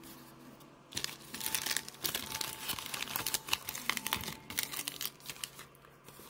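Crinkling and crackling of a plastic-foil trading-card pack wrapper being handled and crumpled. It starts about a second in and dies down near the end.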